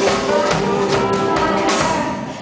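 Live band music amplified in a hall: acoustic and electric guitars, keyboard and drum kit playing together, with a steady beat of about two drum hits a second.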